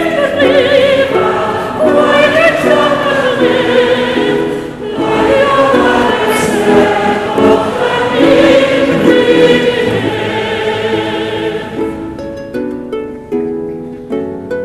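A solo soprano sings a slow song with wide vibrato over plucked harp accompaniment. About twelve seconds in the voice stops and the harp plays on alone.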